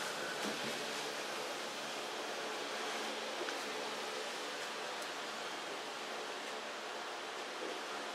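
Steady, even hiss of background noise with no distinct events in it.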